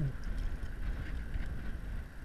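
Wind rumbling on the microphone over open water, with a few faint ticks from handling the line and fish.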